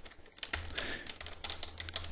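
Keystrokes on a computer keyboard: a run of quick, irregular key clicks as code is typed.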